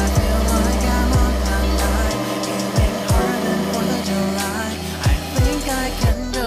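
Background music with a beat laid over a food processor grinding falafel mix of soaked chickpeas, onion and spices; the motor's steady drone stops about two seconds in, leaving the music.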